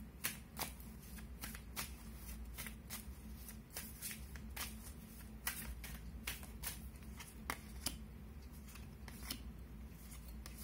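Tarot cards being shuffled by hand: a faint run of short, irregular card clicks and riffles, about one or two a second, over a low steady hum.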